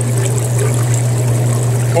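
Water running and trickling across a gold shaker table's deck as muddy ground-quartz tailings slurry is poured onto it from a cup, over a steady low machine hum.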